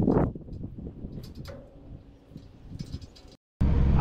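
Irregular metal clanks and knocks of hand-tool work on a field cultivator's wheel mount, loudest at the start. Near the end, after a brief gap, a tractor engine hums steadily, heard from inside the cab.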